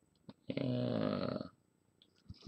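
A man's low, drawn-out vocal sound, steady in pitch, lasting about a second.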